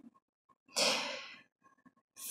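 A woman's single short, breathy sigh about a second in, fading out within half a second.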